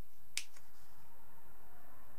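A single sharp click about a third of a second in, with a fainter click just after it, as a tape-sealed rolled paper pattern is handled and worked open by hand.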